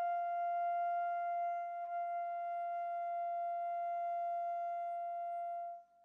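One long, steady high note sustained in chamber music for alto flute, violin and piano, soft and plain in tone with no piano heard under it. It stops shortly before the end.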